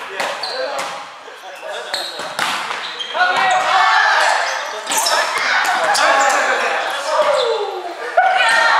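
Indoor volleyball rally in a gym hall: the ball is struck with sharp slaps and sneakers squeak on the hardwood floor. Players shout and call out, loudest in the second half.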